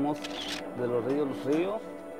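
A person speaking Spanish over steady background music.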